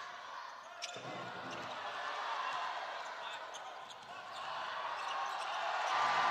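Court and crowd sound of an indoor basketball game: a steady murmur of spectators with a ball bouncing on the court and a few sharp ticks. The crowd noise builds over the last two seconds.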